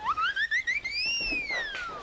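A whistle-like sound effect: one pitched tone climbs in quick little steps for about a second, then swoops higher and glides smoothly down.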